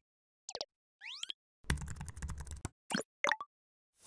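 Cartoon sound effects for an animated logo intro: a pop, a quick rising chirp, a rapid run of keyboard-like clicks over a low rumble, then two more pops.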